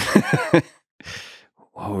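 A man laughing briefly in a few quick pulses, then a breathy exhale like a sigh, before speech resumes near the end.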